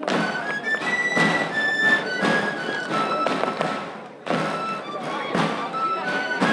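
Traditional Andalusian pipe-and-tabor music: a three-hole flute plays a stepping melody over regular strokes of a tamboril drum, with a brief pause about four seconds in.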